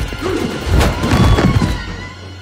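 Film soundtrack of a violent struggle: loud crashing impacts about halfway through, over tense horror score music.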